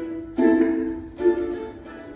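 Ukulele strummed: a few chords ringing out, with two strong strums about half a second and just over a second in.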